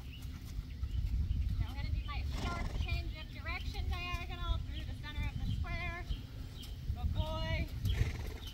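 Faint, distant talking in short phrases over a steady low rumble of wind on the microphone.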